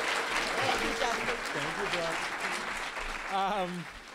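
Audience applauding, with a few voices calling out over the clapping; the sound fades down toward the end.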